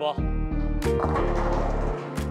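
Background music with a heavy, stepping bass line. About a second in, bowling pins crash and scatter as the ball strikes.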